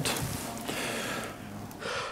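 A person breathing close to the microphone: a long exhale that fades away, then a short breath near the end.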